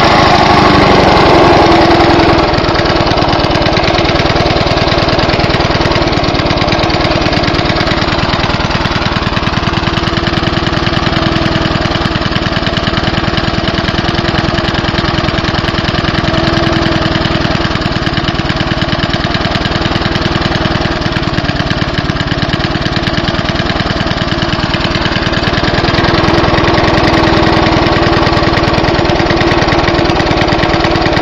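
Briggs & Stratton single-cylinder engine on a Bolens Mulcher push mower running steadily on kerosene after a warm start. It is a little louder for the first couple of seconds and again near the end.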